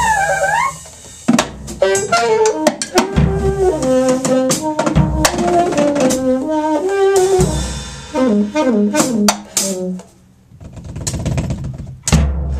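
Alto saxophone improvising free jazz in quick runs of notes and pitch bends, over a drum kit played in scattered sharp hits. The playing falls to a brief lull about ten seconds in, then builds again.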